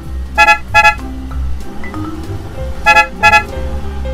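Two double horn beeps, a quick 'beep-beep' about half a second in and again near three seconds, over background music.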